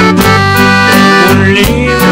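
Korg Pa600 arranger keyboard playing an instrumental passage: a held lead melody over a bass line and a steady beat of drum hits.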